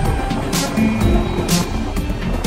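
Live improvised rock band music, with steady bass and sustained pitched tones, cut by a sharp percussive hit about once a second.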